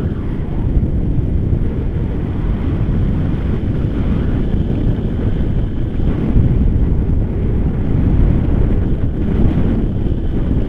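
Airflow buffeting the microphone of a camera carried on a paraglider in flight: a loud, steady, low rumble that swells and eases with the gusts.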